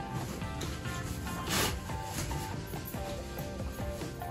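Background music with steady held notes, and a brief rustle of fabric about one and a half seconds in as a pram's padded boot cover is pressed and clipped into place.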